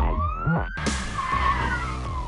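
Sound effects of an animated TV outro: a car skidding, with a long tone that rises in pitch and then falls away slowly, over a steady electronic beat that drops out briefly just before the middle.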